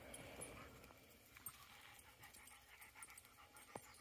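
Near silence, with faint sounds of dogs moving about and a couple of soft ticks.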